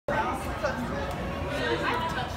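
Indistinct background chatter of people's voices in an indoor public space.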